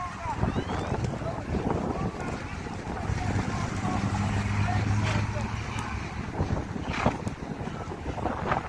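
Wind buffeting a phone microphone held by a rider on horseback, with indistinct voices under it. A low steady hum comes in for a few seconds in the middle, and there are a few sharp knocks near the end.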